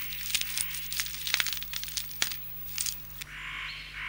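Red squirrel tearing the scales off a conifer cone as it feeds: a quick, irregular run of dry cracks and crackles, giving way about three seconds in to a steady soft hiss.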